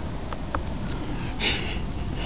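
A man sniffing, drawing breath in sharply through the nose once about one and a half seconds in, over a low steady background hiss.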